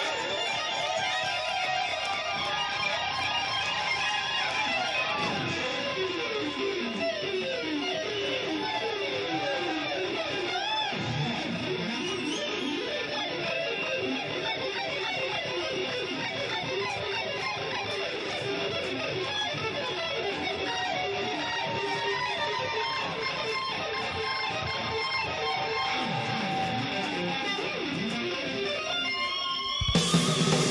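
Electric guitar solo: fast lead runs full of pitch bends and wavering vibrato, in an unaccompanied stretch with no drums.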